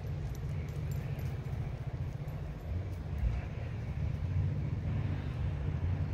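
Outdoor background of a steady low rumble, with a few faint light ticks in the first second or so.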